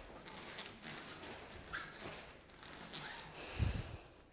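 Karate kata performed on a mat: short sharp breaths and the rustle of the gi with each move, then a low thump about three and a half seconds in.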